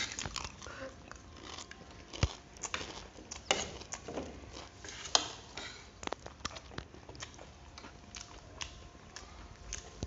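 Two people eating grilled pork sekuwa: chewing and mouth sounds, with scattered, irregular clicks and scrapes of forks against plates.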